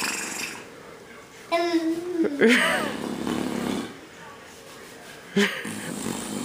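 Soft, wordless voice sounds. About a second and a half in, a high-pitched voice holds a note and then slides down, followed by a short run of babble-like sounds with rising and falling pitch. A brief vocal sound comes near the end.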